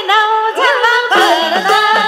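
A woman singing a Nepali lok dohori folk melody into a microphone, her voice gliding and ornamented. Folk-band accompaniment with light drum beats fills in about a second in.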